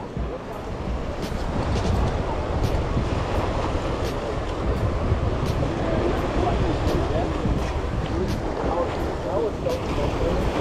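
Steady wind rumbling on the microphone over ocean surf washing against the jetty's rocks, with faint voices in the background in the second half.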